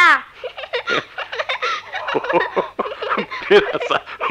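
A person laughing in quick, choppy bursts, just after a drawn-out rising vocal sound.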